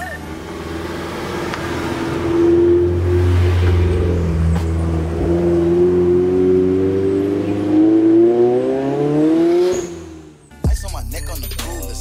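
A car engine running and accelerating: its pitch holds at first, then climbs steadily for about six seconds before the sound drops away quickly, about ten seconds in.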